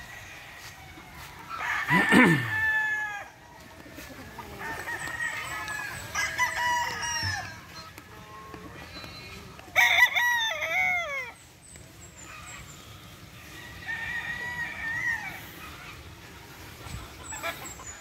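Gamefowl roosters crowing in turn, about four crows from several birds: loud ones about two seconds in and about ten seconds in, others between and a fainter one near the end.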